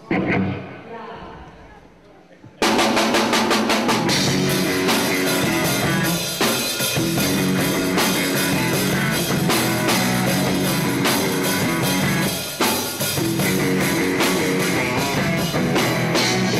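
Live rock band starting a song: a single hit rings out at the start and fades. About two and a half seconds in, the drum kit and electric guitar come in together, loud, and the band plays on steadily.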